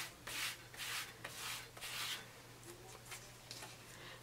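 Palm rubbing a Nad's wax strip down over a hairy leg, a run of soft brushing strokes about two a second that fade out after about two seconds. This is the wax being pressed onto the hair before the strip is ripped off.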